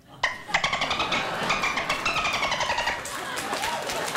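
A man imitating a dolphin with his voice: a high, rapidly pulsing squeal-chatter lasting about two and a half seconds, climbing slightly and then sliding down in pitch.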